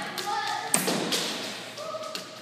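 A single sharp knock about three-quarters of a second in, ringing out with a long echo as in a large hall, among people's voices.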